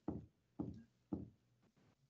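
Three faint knocks, about half a second apart, as of something tapping on a hard surface near a call participant's microphone.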